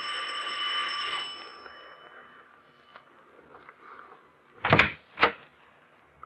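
Radio-drama sound effect of a doorbell ringing once, a bright bell tone fading away over about two seconds. Near the end come two sharp clacks about half a second apart, as the door is unlatched and opened.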